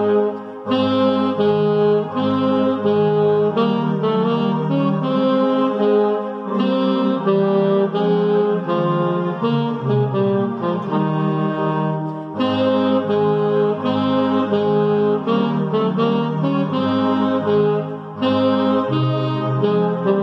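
Alto saxophone playing a slow hymn tune in sustained, connected notes, with a lower part sounding along with it. The phrases break off briefly about 12 and 18 seconds in.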